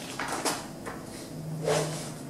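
Glossy pages of a thick paper catalogue rustling and sliding as they are turned, in a few short sweeps.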